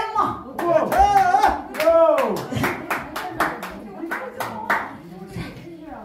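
A small audience clapping in quick, irregular claps, with voices calling out over the first couple of seconds; the clapping thins out near the end.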